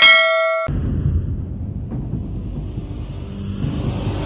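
Bell 'ding' sound effect of a subscribe animation as the notification bell icon is clicked, ringing briefly and cut off sharply under a second in. A low rumble follows and carries on as the channel's logo ident begins.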